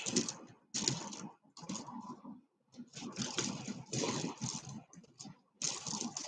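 Strands of round turquoise stone beads clicking and rattling against one another as they are handled, in irregular bursts with a short pause about halfway through.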